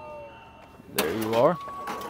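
Thin electronic beep tones from a checkout card terminal or register during a card payment, with a short male voice about a second in and a few light clicks.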